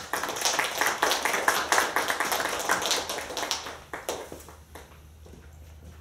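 Small audience applauding, loud at first and dying away about four to five seconds in.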